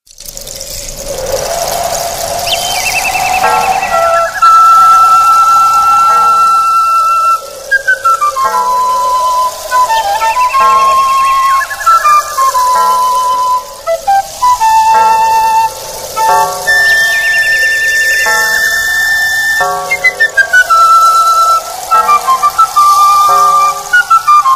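Instrumental Andean altiplano folk music starting from silence: a rising wash of sound, then a flute carrying a melody of held notes and quick descending runs over light low beats.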